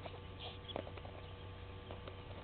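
Faint scattered clicks and a couple of brief high peeps from Natal spurfowl and their chicks foraging in dry grass, over a steady low electrical hum.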